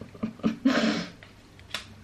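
A woman's short breathy laugh: a few quick voiced pulses followed by a louder exhaled burst about half a second in.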